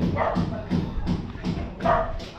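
A dog barking repeatedly, a string of short barks a few tenths of a second apart.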